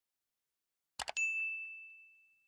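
A quick double click about a second in, followed at once by a single bright bell ding that rings and slowly fades: the click and notification-bell sound effect of an animated subscribe-button end screen.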